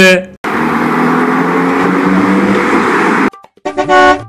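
Road-vehicle sound effect: a steady engine-and-road noise that cuts off abruptly after about three seconds, then a short, steady car horn blast near the end.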